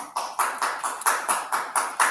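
Hand clapping, about four even claps a second.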